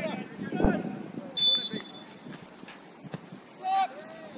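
A referee's whistle blowing once, short and shrill, about a second and a half in: the kick-off signal. Players' shouts are heard across the pitch, with a thud early on and a call near the end.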